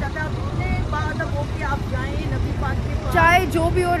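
Low, gusty rumble of wind buffeting a phone's microphone outdoors, under faint voices of people talking. A woman's voice comes in loud and close about three seconds in.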